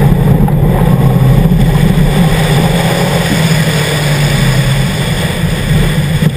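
Engine of a 2011 Subaru WRX, its 2.5-litre turbocharged flat-four, running steadily under load as the car drives a gravel rally course, mixed with road and wind noise.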